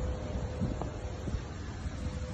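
Outdoor ambience with a low rumble of wind on a phone microphone, a faint steady hum and a few soft ticks.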